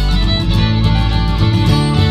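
Old-time fiddle tune: a fiddle playing the melody over a steadily strummed acoustic guitar accompaniment.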